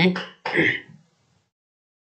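A man's voice ends a short phrase, then he briefly clears his throat.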